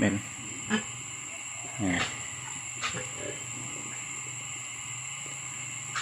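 A sow gives one short grunt about two seconds in, with a couple of faint clicks around it, over a steady low background noise.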